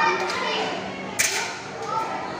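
Background chatter of children's voices, with one sharp click a little over a second in.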